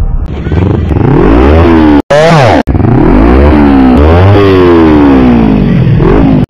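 Kawasaki Ninja sport motorcycle engine revved hard several times, each rev rising and falling steeply, to rev-bomb a crowd. The sound is very loud and cuts out briefly twice about two seconds in.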